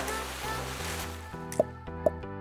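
Background music under a rushing, water-splash sound effect that fades out over about a second and a half, followed by a short pop.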